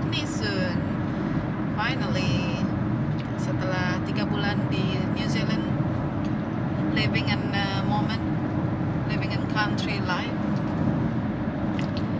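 Steady road and engine noise inside a moving car's cabin, with a woman's voice talking over it at intervals.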